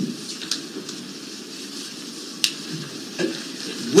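Courtroom room tone in a pause between spoken clauses: a steady hiss with a faint low rumble, and a single sharp click about two and a half seconds in.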